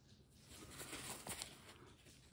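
Faint rustling with a few soft crackles from a paper towel being handled and pressed onto the skin by a gloved hand to blot off excess liquid, starting about half a second in.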